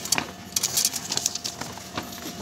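A paper deposit receipt being torn off and pulled from the slot of a Tomra reverse vending machine: a short papery crackle with a few light clicks in the first second. A faint steady hum sits under it.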